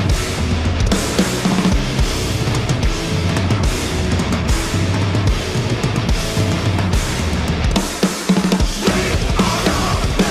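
Heavy metal recording with a full drum kit played hard over distorted guitars: dense, busy drumming, with a brief break about eight seconds in before the band comes back in.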